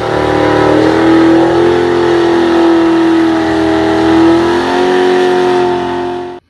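Ford Mustang's engine held at high revs during a burnout: a loud, steady drone that rises a little in pitch in the first second and then holds.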